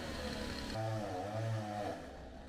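A motor vehicle's engine running, its pitch wavering up and down in the second half.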